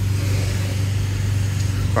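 A car engine idling: a steady low hum.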